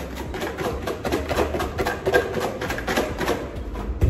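A plastic shaker bottle of adobo seasoning shaken hard and repeatedly over a metal bowl, a fast, uneven string of rattling shakes. The shaker's cap is barely open, so only a sprinkle comes out with each shake.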